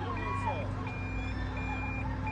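A high electronic warning beep repeating steadily, about three beeps in two seconds, each lasting about half a second. Faint voices are in the background.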